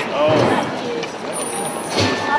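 Voices and general background noise of a busy pedestrian shopping street, with a burst of unclear speech in the first half second.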